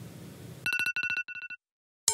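Telephone ringing: a rapid electronic trill at two steady high pitches in about three short runs, starting just over half a second in and cutting off about a second and a half in.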